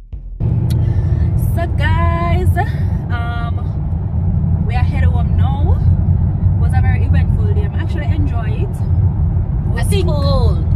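Steady low road and engine rumble inside a moving car's cabin, starting suddenly about half a second in, with a woman's voice talking over it at times.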